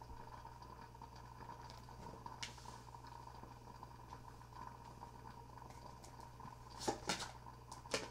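Quiet room tone with a steady faint hum; near the end, a few soft clicks of tarot cards being handled and laid down on the table.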